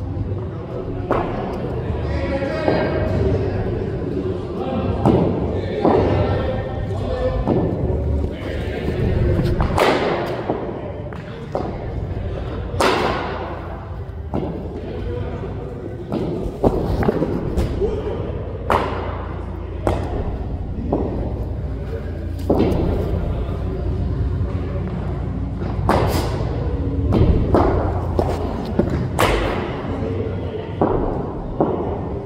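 Cricket ball repeatedly cracking off the bat and thudding into the pitch and netting, over a dozen sharp knocks a second or a few seconds apart, echoing in a large indoor hall.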